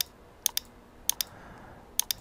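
Computer mouse button being left-clicked: a few short, sharp clicks, some in quick pairs, over a quiet room background.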